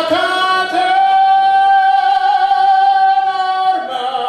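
A singing voice holding one long high note for about three and a half seconds, cutting off shortly before the end.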